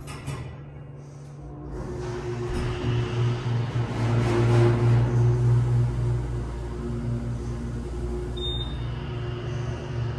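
Otis Hydrofit hydraulic elevator's pump motor starting up about two seconds in, heard from inside the car. It is a steady hum with a few held tones that swells to its loudest midway and then holds. A brief high tone sounds near the end.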